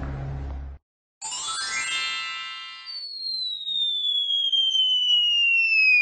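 Added cartoon sound effects: a low rumbling noise that cuts off under a second in, then after a short gap a chiming upward sweep, followed by a long falling whistle that drops steadily in pitch, the classic falling sound effect.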